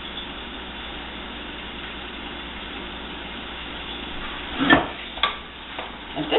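Ground turkey with onions, peppers and garlic frying in a skillet, a steady sizzle. Two sharp knocks come near the end.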